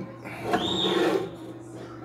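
A glass vodka bottle sliding into place on a shelf, a short scrape lasting under a second, with faint background music.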